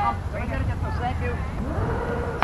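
A spectator's voice calling out over a steady low rumble.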